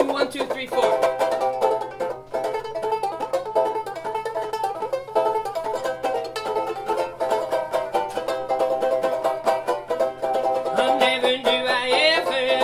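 Four-string banjo ukulele strummed in a steady, bright rhythm as a song's intro. A voice comes in over it near the end.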